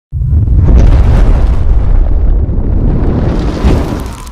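Explosion-style rumbling sound effect for an animated logo intro, starting abruptly and running loud and deep, with a second burst near the end.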